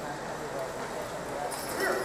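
Murmur of voices among the onlookers, with the hooves of a team of draft horses shuffling on dirt. Near the end a louder call rises as the team lunges into the pull against the weighted sled.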